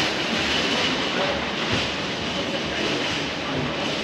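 Steady rushing street noise, with faint voices underneath.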